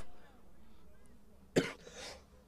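The last shouted word fades out, then it is nearly quiet, and about one and a half seconds in a person gives one short cough-like sound.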